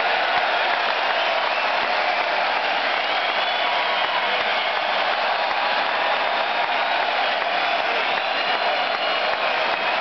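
Large arena crowd applauding and cheering, a steady mass of clapping with scattered shouts above it.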